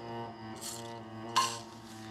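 Background score of low bowed strings, cello and double bass, holding a sustained chord. About a second and a half in comes a single sharp clink of cutlery.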